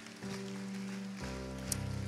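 Soft background music: sustained keyboard chords held under the pause, changing to a new chord with a deeper bass about a second in.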